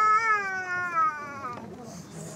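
A single long vocal cry, held for about two seconds at a high, steady pitch. It rises slightly and then slides down, fading out about one and a half seconds in.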